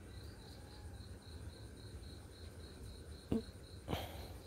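Insect chirping in an even rhythm, about four short high chirps a second. Two sharp knocks come near the end.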